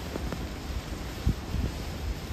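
Strong gusty wind buffeting the microphone: an uneven low rumble that rises and falls.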